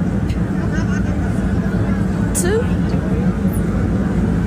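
Steady low rumble of city street traffic, with a short questioning voice answering "Two?" about halfway through.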